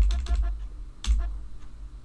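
Keyboard keys tapped quickly in a rapid clatter of clicks and low thumps as notes are played in, stopping about half a second in, then one more key click about a second in.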